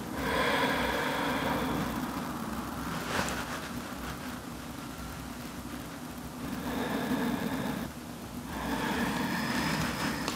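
A person's long, slow breaths close to a clip-on microphone: three drawn-out exhales of about two seconds each, one at the start and two near the end.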